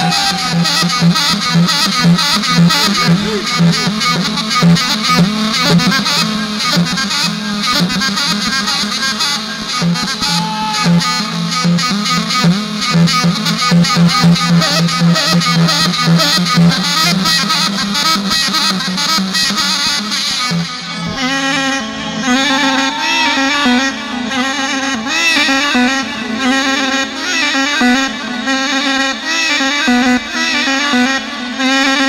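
Loud, amplified live dabke music led by a long cane reed pipe of the arghul type, played into a microphone, over a fast pulsing accompaniment. About two-thirds of the way through, the low pulsing drops out and the melody changes.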